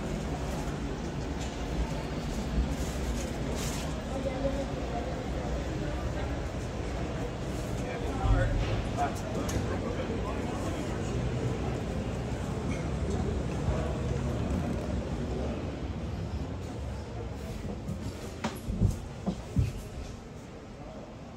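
Indistinct background voices and general crowd noise of a busy indoor exhibition hall, with a few short low thumps near the end.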